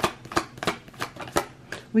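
A deck of oracle cards shuffled hand over hand, each packet of cards landing on the pile with a sharp slap, about three a second.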